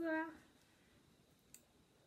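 A woman's short wordless voiced sound, then quiet room tone with one faint click about one and a half seconds in.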